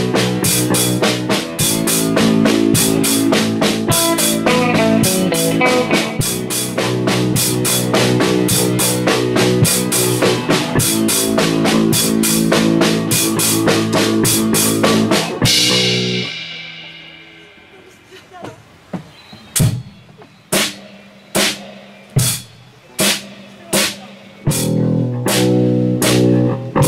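Live rock band with drum kit and electric guitar playing a dense instrumental passage that stops abruptly about 15 seconds in, the cymbals ringing out. Single sharp percussion hits follow about once a second, and the full band comes back in near the end.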